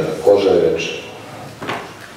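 A man speaking, his words ending about halfway, followed by quieter room tone with one short click near the end.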